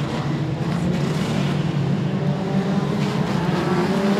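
A pack of modified sedan race cars running together at low speed in single file under caution, a steady engine rumble that grows a little louder as the field closes up for the restart.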